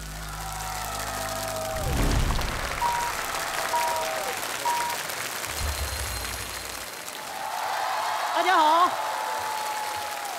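Studio audience applauding over short stage-transition music, with three brief high tones about a second apart near the middle.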